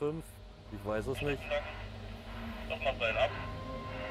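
A man's voice in short, quiet snatches, chuckling and muttering a few words, over a steady low hum.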